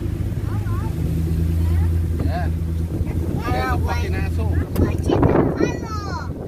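Steady low hum of a car's engine and tyres heard from inside the cabin while driving, with a brief rush of noise about five seconds in.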